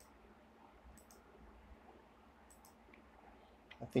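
A few faint computer-mouse clicks, two of them in quick pairs, as a palette is picked from a software menu.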